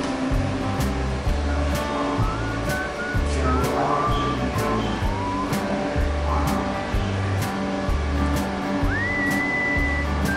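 Music with a regular beat and a low bass line, under a high whistle-like melody that slides between notes. Near the end the melody glides up into one long held note.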